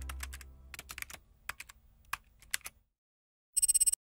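Computer keyboard typing sound effect: scattered single key clicks over the fading end of a held musical chord, then a quick run of about ten rapid clicks near the end.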